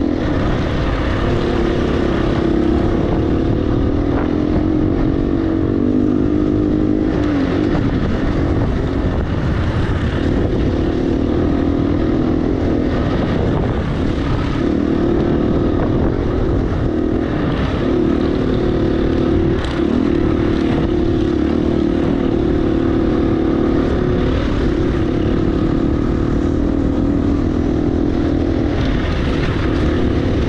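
A 2018 KTM 350 EXC-F's single-cylinder four-stroke engine running steadily as the dirt bike is ridden at speed. Its note rises and falls a little with the throttle, with a brief dip about two thirds of the way through, over a low rumble of wind on the microphone.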